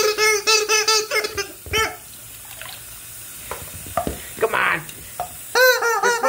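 Rubber chicken toy squeezed while full of water, its squawk coming out as a gurgling, rapidly warbling sputter for about a second and a half, with another squawk near the end. A tap runs into the sink in the quieter stretch between.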